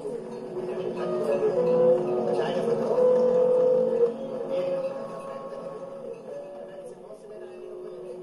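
Experimental sound-sculpture piece built from field recordings: several held tones of different pitches overlap and shift every second or two over a busy textured layer, with no deep bass, swelling louder in the middle.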